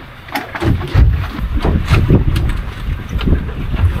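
Gusty wind buffeting the microphone on an open boat at sea, an irregular low rumble that grows louder about a second in.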